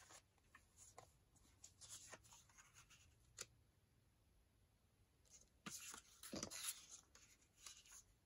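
Soft rustling and sliding of a stack of small printed paper cards being leafed through by hand, with scattered light clicks of paper edges and a louder flurry of handling about six seconds in.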